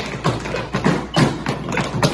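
Tap shoes striking a hard studio floor: several dancers tapping a quick rhythm together, about six to eight sharp taps a second.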